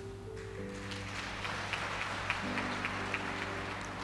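Congregation clapping, starting about half a second in, over soft background music with long held notes.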